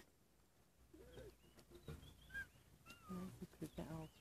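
Faint animal calls: a few short, high calls that glide in pitch, then lower calls in the last second.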